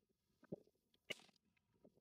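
Near silence broken by a few faint, short, scattered clicks, the clearest about half a second and a second in.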